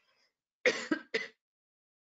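A woman gives a short cough in two quick bursts, clearing her throat, a little over half a second in.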